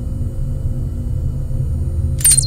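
Deep, steady rumble with a low held drone, the sound design of an animated logo intro, slowly swelling in loudness.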